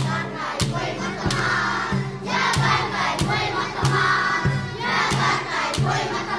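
A group of children singing a traditional Torres Strait Islander song in chorus over a steady percussion beat, about three strokes every two seconds, as the seated dancers strike their sticks in time.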